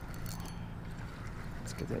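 Pflueger spinning reel being cranked to reel in a hooked bass, its gears giving a steady low hum with a few faint ticks. A man's voice starts near the end.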